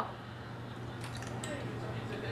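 Faint chewing of jelly beans: a few soft mouth clicks over a steady low hum in the room.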